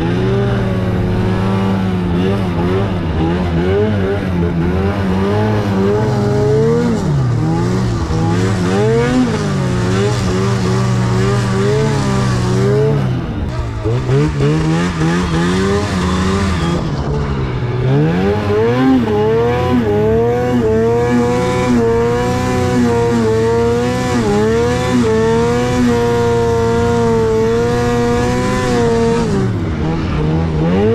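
Arctic Cat Catalyst snowmobile's two-stroke engine revving up and down as it is ridden through deep powder, the pitch rising and falling with the throttle. The throttle comes off briefly about 13 seconds in, again about 17 seconds in and just before the end.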